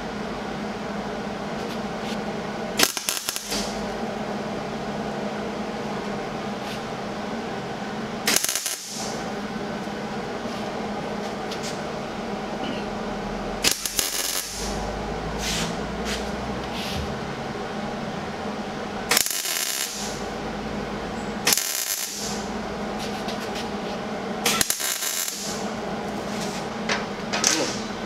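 MIG welder laying weld onto the end of a cut-down J-bolt in about six short crackling bursts, each under a second long, with a steady hum in between.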